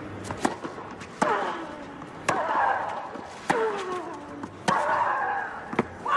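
Tennis rally on clay: a racket strikes the ball about once a second. Most strikes are followed at once by a player's short grunt that falls in pitch.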